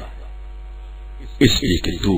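Steady low electrical mains hum in the recording, heard on its own for about a second and a half before a man's voice starts again.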